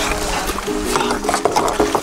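Background music with held notes over a low bass.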